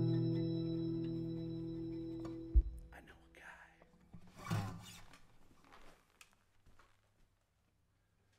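A band's last sustained chord on organ, dobro, acoustic guitar and bass ringing out and fading, stopped by a sharp thump about two and a half seconds in. Then two faint whisper-like breaths, and near silence.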